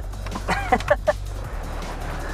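Steady low drone of a car's engine and tyres heard from inside the moving car, with a brief bit of voice about half a second in.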